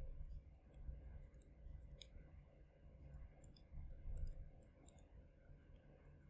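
Near silence: faint room tone with a few scattered small clicks.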